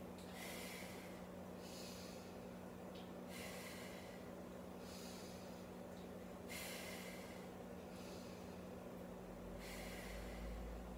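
A woman's heavy, rhythmic breathing while she works through dumbbell chest presses, one breath about every one and a half seconds, over a steady low hum.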